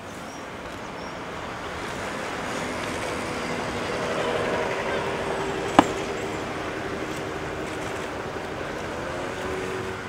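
Steady road-traffic noise in the open air, with one sharp click about six seconds in.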